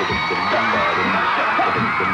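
Studio audience cheering and shouting over the show's theme music.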